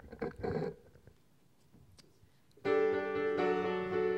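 A piano begins playing sustained chords about two and a half seconds in, the opening of the song's introduction.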